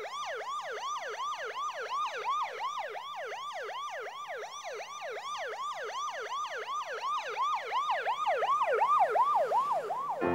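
An emergency-vehicle siren in a fast yelp, about three sweeping pitch cycles a second, growing gradually louder toward the end.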